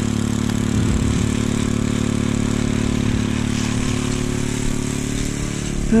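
A small engine running steadily at a constant speed, with no change in pitch.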